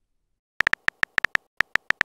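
Texting app's keyboard click sound effect: a quick, uneven run of about eleven short, sharp ticks, one per letter as a message is typed, starting about half a second in.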